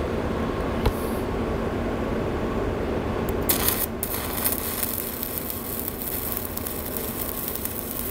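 Stick-welding arc of a 3/32-inch 7018 electrode run at 80 amps, laying a fill pass on 4-inch schedule 40 pipe: a steady frying hiss. The arc flares brighter about three and a half seconds in and then burns on evenly.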